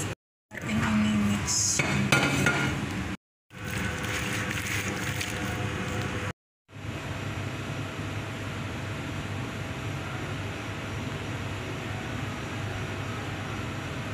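Clinks and clatter of vegetables and a roasting tray being handled, broken by abrupt cuts to silence. From about seven seconds in, only a steady background hum with a faint steady tone remains.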